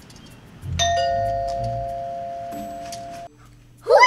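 Doorbell chime ringing: a bright ding-dong comes in about a second in and holds while slowly fading, with a lower note joining before it cuts off. Just before the end a child's voice cries out.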